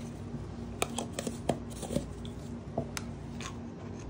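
Scattered light clicks and taps of wooden stir sticks against plastic mixing cups and pigment jars as they are handled on a tabletop, over a steady low hum.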